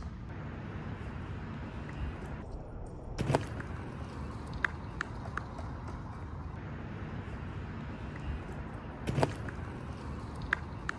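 Steady low outdoor rumble with two sharp thumps from a BMX bike on a grass fly-out bank, one about three seconds in and a louder one near the end as the rider comes through. A few short high chirps sound in between.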